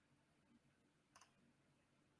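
Near silence: faint room tone with one short click about a second in.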